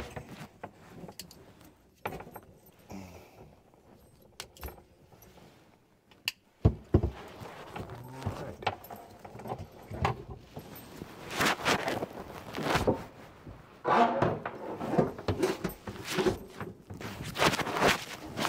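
Metal clinking and rattling of braided stainless supply hoses and valve fittings being handled under a sink cabinet, with scattered knocks and one sharp knock about seven seconds in; the rattling gets busier in the second half.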